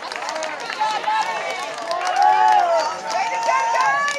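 Several voices shouting and calling out at once, overlapping and high-pitched, loudest around the middle.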